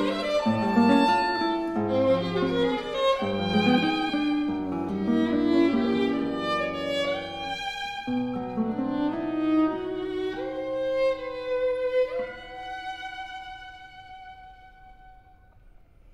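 Violin and classical guitar playing together: a busy passage of many short notes gives way to longer held notes. About twelve seconds in, the music slides up into one long note that is held and slowly fades away.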